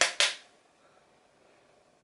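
Two sharp clicks, a fifth of a second apart, right at the start, from small objects handled below the frame, then faint room tone.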